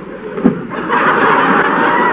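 A short thud about half a second in, then a studio audience laughing loudly from about a second in.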